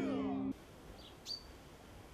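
Men chanting in a Māori welcome, over a steady low hum, break off abruptly about half a second in. Then there is faint outdoor background noise with a few short, high bird chirps.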